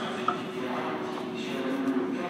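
Metro carriage ambience: a steady low hum with faint, indistinct passenger voices, and a brief knock about a quarter second in.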